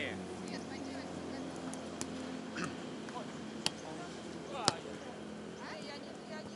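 Three sharp slaps of hands striking a beach volleyball during a rally, about two, three and a half, and four and a half seconds in, the later two the loudest, over faint distant voices.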